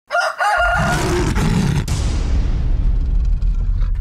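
Rooster crowing sound effect in two parts over the first second, followed by a deep low rumble and hiss that fade away before cutting off near the end.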